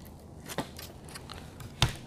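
Faint handling of a Velcro strap being pressed down over a battery in a scooter's battery tray. There is a light tap about half a second in and a sharper click near the end.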